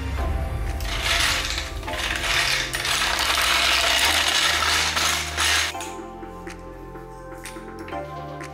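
A steady mechanical rattling noise starts about a second in and stops just before six seconds, over background music.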